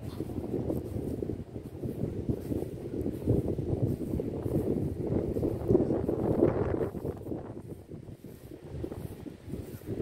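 Wind buffeting the microphone: a rough, uneven low rumble that swells through the middle and eases off near the end.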